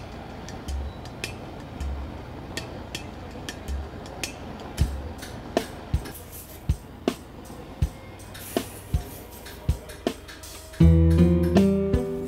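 Gas torch burning steadily with scattered sharp clicks while it heats and tins a car radiator's tubes with solder. About eleven seconds in, guitar music comes in loudly.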